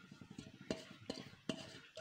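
A few faint, sharp clicks of a utensil tapping against the cooking pot, spaced roughly every half second.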